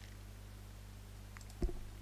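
A steady low electrical hum with faint hiss from the recording, and a single short click about three-quarters of the way through.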